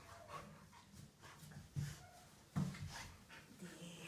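A dog panting and fidgeting while it is handled on the floor, with two soft thumps about two and two and a half seconds in.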